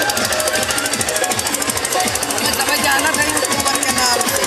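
Loud festival music built on a fast, rapid drumbeat that runs without a break. It is dense and even, with deep repeated beats under it.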